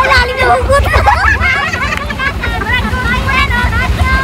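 A group of people laughing and chattering over one another, with laughter breaking out again and again, over a steady low rumble.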